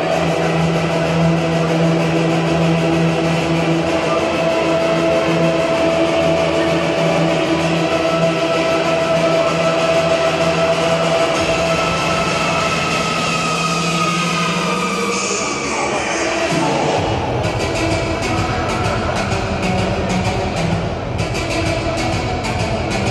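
Ice hockey arena sound with loud sustained pitched tones over it. One held note with its overtones runs through the first half, bends near the middle, and gives way to a different set of tones about two-thirds of the way in.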